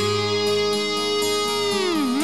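Glam-metal band recording in an instrumental passage: a lead electric guitar holds one long sustained note over a steady bass-and-drum beat. Near the end the note dives sharply down in pitch.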